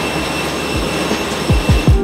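Jet airliner noise on an airport apron: a steady loud roar with a thin high whine. Near the end come a few deep, quickly falling bass hits.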